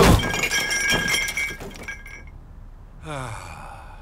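Crash of ceramic teapot and teacups onto a table, followed by clattering and clinking with ringing tones that die away over about two seconds. A short falling tone follows about three seconds in.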